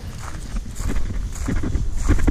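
Footsteps of a person walking on paved ground, with a steady low rumble beneath them that grows louder in the second half.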